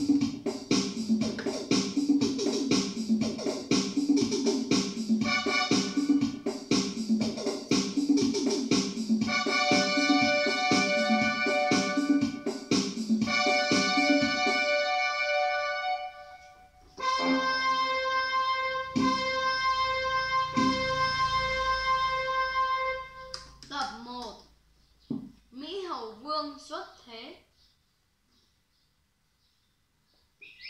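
Portable electronic keyboard played by hand, a melody over its built-in drum-and-bass rhythm accompaniment for about the first fifteen seconds. It then moves to long held chords that stop about two-thirds of the way through. A few short wavering sounds follow near the end before it goes quiet.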